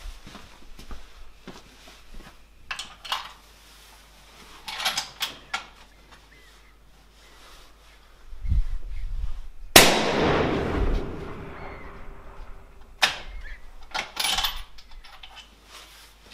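A single rifle shot from a 15-inch-barrelled .284 Winchester bolt-action about ten seconds in, ringing on for a second or so. It is a hot 180-grain ELD-Match load that shows pressure signs. A few short clicks of handling the rifle come before and after it.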